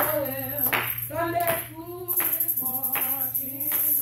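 A gospel chorus sung to steady hand clapping, with a clap on the beat about every three-quarters of a second.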